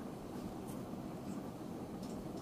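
Steady low hum of a running ceiling fan in a small room, with a few faint scratchy rustles.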